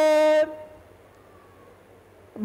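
A male priest's chant, with its last syllable held on one steady pitch and fading out about half a second in. A pause with only faint room tone follows.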